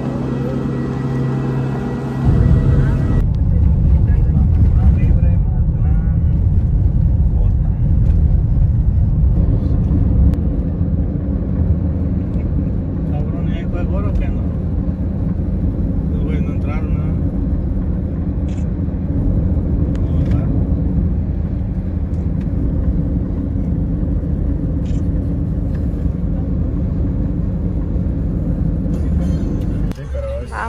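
Steady low rumble of a car driving at highway speed, heard from inside. It follows a steady hum of several held tones that cuts off about two seconds in.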